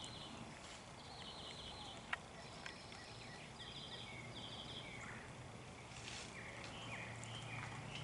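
Faint outdoor ambience with distant animal calls: short, high, buzzy trills repeating every second or so, plus a single click about two seconds in.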